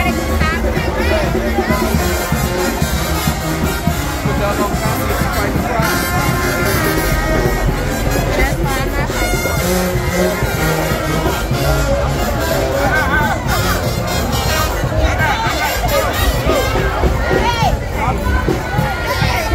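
Live brass band music at a steady beat, with a dense crowd talking and shouting close around.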